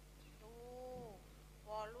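A single drawn-out, high-pitched vocal call lasting under a second, rising slightly and then falling away at the end, with speech starting just before the end.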